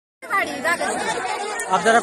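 Several people talking over one another, with a question being asked near the end.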